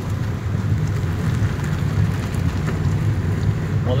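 A 4x4 driving slowly along a rough mountain track: a steady low rumble of engine and tyres on the uneven surface.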